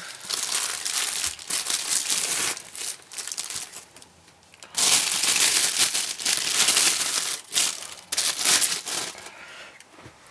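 A plastic bag and soft wrapping are crinkled and rustled by hand as a camera battery grip is unwrapped. The sound comes in irregular bursts, dropping off about three to four seconds in, then loudest from about five seconds in.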